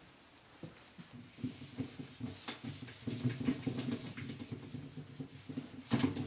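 Handheld whiteboard eraser rubbing across a whiteboard in quick, irregular strokes, wiping off a marker drawing. The rubbing starts about half a second in.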